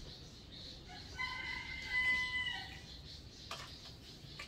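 A rooster crowing once: a single held call about a second and a half long, starting about a second in. A couple of light clicks follow near the end.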